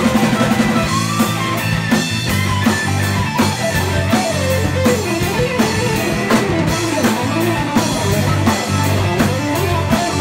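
Live rock band playing: electric guitars over a drum kit keeping a steady beat, loud and close.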